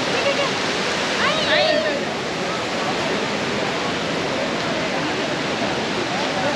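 Crowd chatter over a steady rushing noise, with a brief high, rising cry about a second and a half in.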